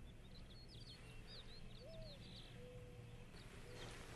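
Faint birds chirping over a low steady hum: a quick run of short high chirps in the first second or so, then a lower whistled note.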